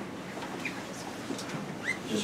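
Quiet meeting-room noise with two short, faint, rising squeaks, one early and one just before the end, from an office chair as a man sits down in it.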